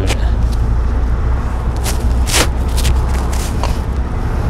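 Steady low engine and road rumble inside the cab of a manual Kia light truck, just shifted into fourth gear and driving along. A few brief sharp noises sound over it around the middle.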